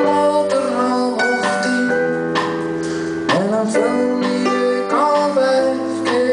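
Live band playing a slow song, with acoustic guitar chords strummed over the drums and the full band.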